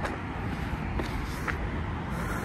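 Steady low rumble of wind and handling noise on a handheld phone's microphone while walking, with a few faint ticks.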